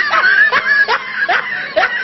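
A man laughing hard in a run of high squeals, each rising in pitch, about two a second.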